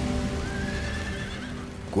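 A horse neighs once, a high drawn-out call about half a second in, over background music with long held tones.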